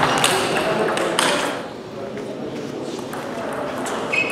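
Celluloid-type table tennis ball clicking sharply off bats and the table in a rally, several clicks in the first second and a half, then echoing hall noise with voices murmuring.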